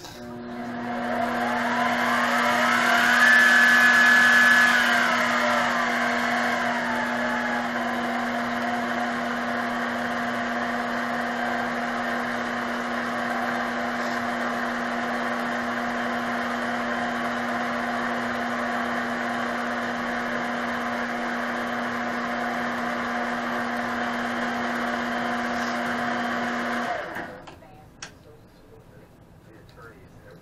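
Benchtop mini metal lathe running with nothing in the chuck: a motor whine whose pitch climbs over the first few seconds as the speed is turned up, then falls back as it is turned down. It then runs steadily at the lower speed until it is switched off and stops about a second before the end.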